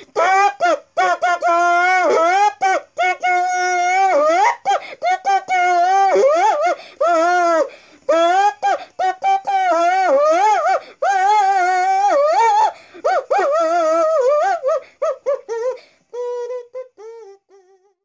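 A tune played through an asthma inhaler's mouthpiece as a makeshift wind instrument: a buzzy, voice-like melody of held and sliding notes with short breaks, thinning out and fading near the end.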